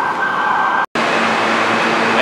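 Steady city street traffic noise, cut off abruptly about a second in, then the steady din of a subway station with a low steady hum.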